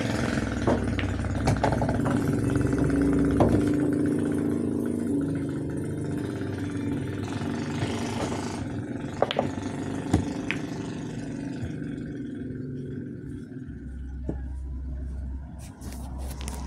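A passing vehicle engine runs steadily and fades away over the first several seconds, while a handful of sharp clicks ring out: a cue tip striking the cue ball and pool balls knocking together.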